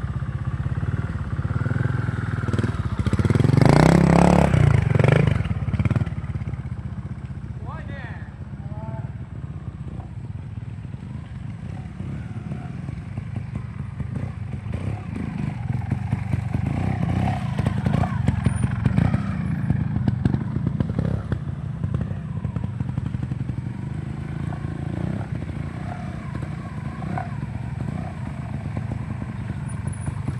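Trials motorcycle engines running at low speed with throttle blips, with a louder burst of revving about three to five seconds in.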